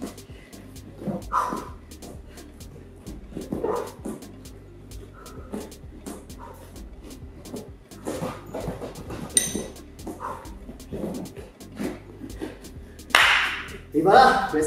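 Men breathing hard through a floor exercise, with short loud exhales and a big gasping breath near the end as they stand up. Many faint sharp taps, likely hands and feet on gym mats, and faint background music run underneath.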